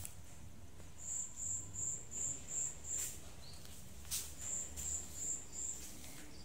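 Insect chirping: short high-pitched chirps at about three a second, in two runs of a couple of seconds each, with two faint clicks in between.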